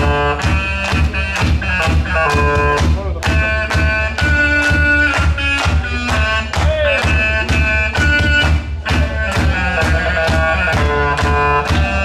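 Live band music: a homemade wind instrument built from pipe plays a melody of held, reedy notes over a steady, even beat.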